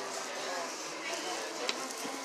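Faint background voices over a steady hiss of ambient noise, with one sharp click near the end.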